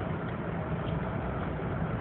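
Steady engine and tyre noise of a moving vehicle, heard from inside the cabin, with a low, even hum underneath.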